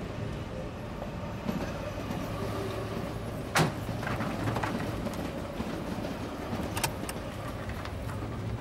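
Car engine running steadily with a low hum, with a sharp click about three and a half seconds in and a couple of lighter ticks later on.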